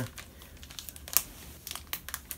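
Plastic lure packets crinkling as they are handled and turned over, a scatter of small crackles with one sharper one about a second in.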